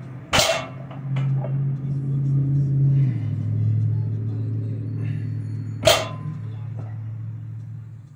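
Steel-and-iron plates of a 235-pound deadlift barbell knocking down on the floor twice, about five and a half seconds apart, as reps are set down, over a steady low hum.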